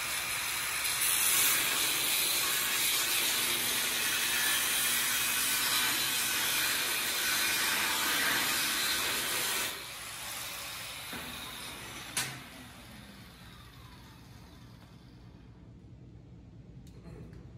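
Handheld angle grinder grinding a steel plate for about ten seconds, then running quieter off the work; about twelve seconds in it is switched off and winds down with a falling whine.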